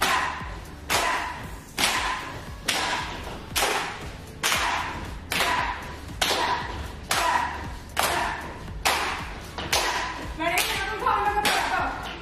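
Steady rhythmic claps keeping time for a workout routine, a sharp hit a little more than once a second, each ringing briefly. A voice is heard briefly near the end.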